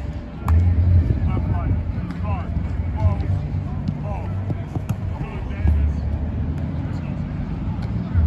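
Wind buffeting the microphone in gusts, a low rumble that surges about half a second in and again near the end. Over it, distant voices call out across the field, with a few sharp knocks.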